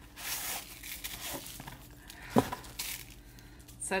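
Wrapping paper being handled and unwrapped: several stretches of crinkling and rustling, with one short, sharp knock a little past halfway.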